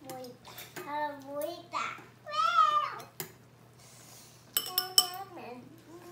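A small child's voice talking in short high-pitched phrases, with a few sharp clinks of utensils on dishes near the end.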